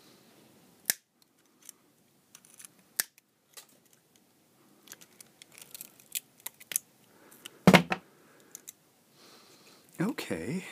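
Diagonal side cutters snipping and cracking away the thin plastic housing of an LED lamp, heard as a scattered series of sharp snaps. The loudest, heavier crack comes a little over three-quarters of the way through.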